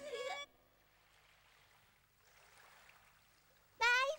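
Near silence with faint hiss, after a voice trails off in the first half-second; near the end a child's high voice calls out "bye-bye".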